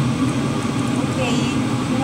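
Steady low hum of a kitchen range-hood exhaust fan running over the stove.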